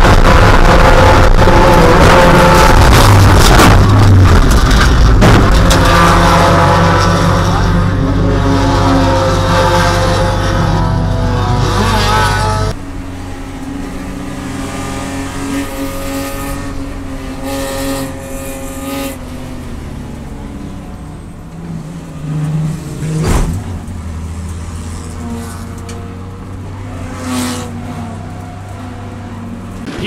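Racing car engine heard from inside the cockpit at speed, its pitch rising and falling. About 13 s in the sound cuts abruptly to a second, quieter in-car recording of another race car's engine, with a sharp knock near the 23-second mark.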